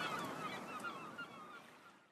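Many birds calling over a steady rushing background noise, fading out toward the end.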